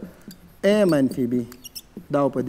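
Dry-erase marker squeaking on a whiteboard while writing: one longer squeal about half a second in, then a few short squeaks as the strokes are drawn.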